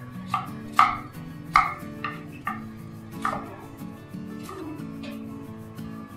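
Chef's knife chopping an onion on a wooden cutting board: about six sharp knife strikes in the first three and a half seconds, then two fainter ones, over background music.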